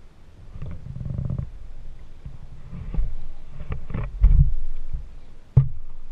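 Low thumps and knocks from a kayak hull as it is paddled. A rumble comes about a second in, then a run of short knocks in the second half, the loudest about four seconds in and a sharp one near the end.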